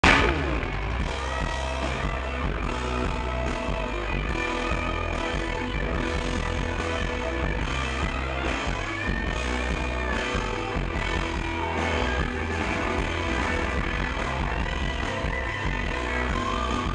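Rock band playing live at full volume, electric guitars over bass and drums with keyboard, in an instrumental passage with no singing.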